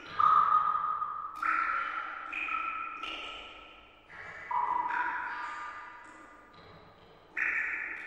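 Slow, ringing chime-like notes, struck one after another about every second or two, each starting suddenly and fading away; the first, just after the start, is the loudest.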